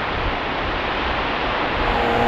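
Steady, even rushing hiss of outdoor background noise, with no distinct events.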